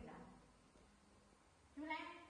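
Baby macaque giving short, meow-like coo calls: one trailing off at the start and another starting near the end.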